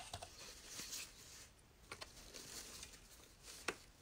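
Faint rustling and crinkling of wired ribbon as a bow's loops and tails are pulled apart and fluffed, with a few small sharp ticks.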